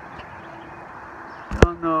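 Steady, quiet outdoor background noise, broken about one and a half seconds in by a single sharp knock. A man's voice starts just after the knock.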